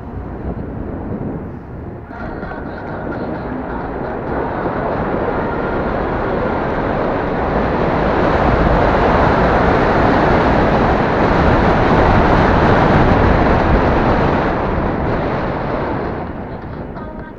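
Rushing wind on the microphone and road noise from an electric scooter riding along a paved path. It builds steadily with speed, is loudest through the middle, and dies down near the end.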